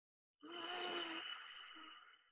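Ujjayi breath with the lips closed: one long breath drawn through the nose and constricted in the back of the throat, hushed, with a thin steady whistle running through it. It sounds like snorkeling. It starts about half a second in and fades near the end.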